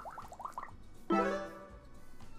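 Crabbin' for Cash slot game sound effects: a quick run of about five rising blips, then about a second in a pitched chime that rings and fades. The chime marks the fisherman wild's x3 multiplier tripling his collected cash prize.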